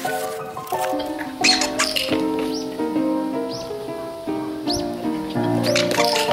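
Squeaker hidden under a training mat squeaking about five times, roughly once a second, as the mat is pressed or stepped on. Upbeat background music plays throughout and is the loudest sound.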